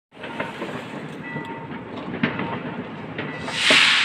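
New Year's fireworks going off around the neighbourhood: a continuous crackle with scattered sharp pops, and a loud hissing whoosh swelling up near the end.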